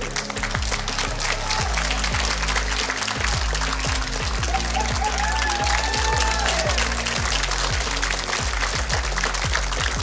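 Studio audience applauding over background music with repeated low bass notes; a voice calls out briefly about halfway through.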